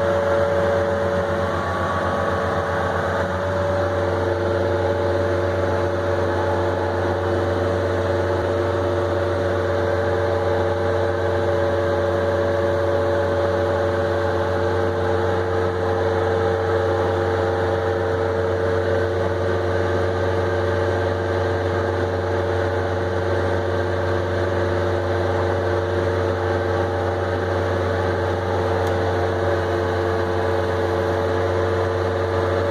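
Skid-steer loader engine running steadily at an even speed, heard close from the operator's seat, with a steady low hum and a few held higher tones over it.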